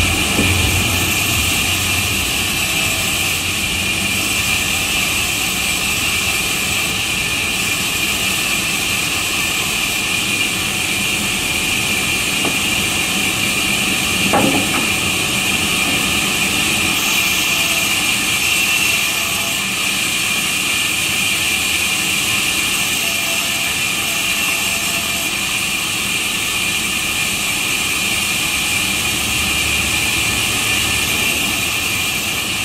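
Sawmill band saw running steadily as a worker feeds wood through it to rip it into planks: a continuous loud machine noise with a high whine that doesn't let up.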